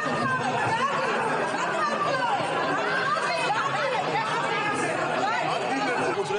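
A crowd of lawmakers' voices talking over one another in a large parliamentary chamber, a steady babble of many people at once amid a commotion on the chamber floor.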